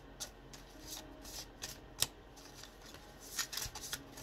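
A deck of oracle cards being shuffled by hand, overhand style: a run of short swishes and card-on-card clicks, with one sharper snap about halfway through and a quick cluster near the end.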